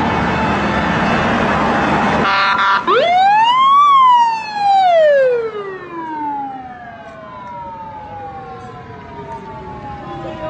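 Rushing road and wind noise from a moving vehicle cuts off abruptly about two seconds in. A siren follows: it winds up in pitch to a peak about a second later, then slides slowly down over several seconds, and a second, lower-falling siren tone trails on to the end.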